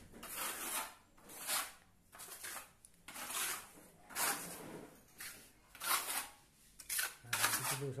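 A plastering trowel scraping wet cement across a rough wall in short repeated strokes, about one a second, smoothing the render.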